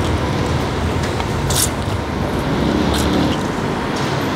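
Steady rumble of road traffic. A couple of short slurps of noodles come through over it, about a second and a half in and again near three seconds.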